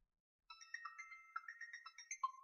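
Mobile phone ringtone playing faintly: a quick melody of high electronic notes starting about half a second in.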